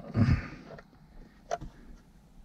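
A short breathy vocal sound, then a single light click about one and a half seconds in as the phone is handled in the plastic head-up display holder on the dashboard.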